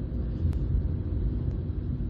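Cabin noise inside a moving 2017 Skoda Rapid Spaceback 1.2 TSI: a steady low rumble of engine and road noise, with a faint click about half a second in.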